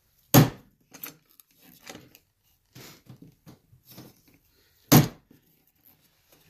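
Quarter-inch mortise chisel being struck to chop a mortise in hardwood sash stock: two hard blows, one just after the start and one about five seconds in, with quieter knocks between.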